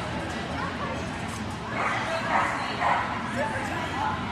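A dog giving a few short, high-pitched calls over people talking in the background.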